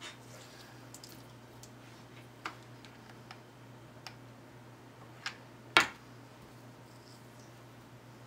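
Scattered light clicks and taps from hands working with a hot glue gun and lace-wrapped wire on a tabletop, with one louder, sharper knock a little before six seconds in.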